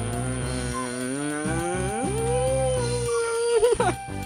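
A man's long closed-mouth hum, his mouth full of food. It holds low, glides up to a higher pitch about halfway through and holds there, wavering briefly near the end.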